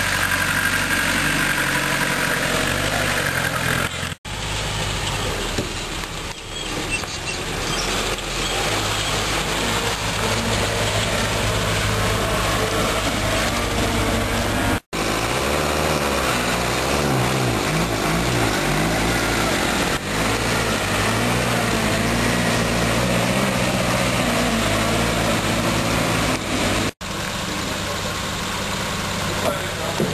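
Land Rover engines running and revving as the vehicles work through mud. Three edit cuts briefly break the sound. In the middle section an engine's revs rise and fall while one Land Rover tows another on a strap.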